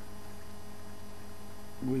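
Steady electrical mains hum with a light hiss in the recording; a man's voice comes in near the end.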